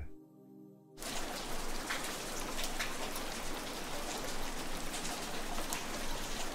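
Rain ambience: a faint low tone for about the first second, then a steady, even patter and hiss of rain that sets in about a second in and keeps on.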